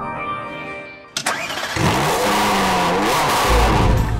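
A car engine is started with a sudden burst about a second in, then revved up and down, as a sound effect for a start-button title graphic. Heavy bass theme music comes in near the end.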